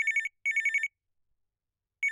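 Telephone ringing with a double ring: two short, rapidly pulsing rings in the first second, then a pause, and the next double ring starts at the very end. It is the sound of an incoming call.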